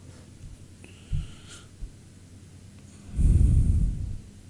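A man's heavy breath out through the nose, close to the microphone, lasting about a second near the end, with a short low thump about a second in.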